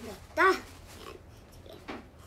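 A woman's short vocal exclamation, "ta!", about half a second in, her voice sped up to a high chipmunk pitch. A faint click comes near the end.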